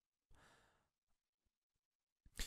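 Near silence: room tone, with a faint breath out from the narrator a little way in.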